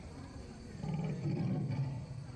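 Low, growling roar played as the sound effect of an animatronic dinosaur display. It starts a little under halfway through and runs for just over a second, above the background noise of the crowd.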